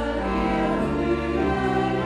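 Soprano voice singing a Marian hymn with clarinets, double bass and organ, in long held chords; the harmony moves to a new chord near the end.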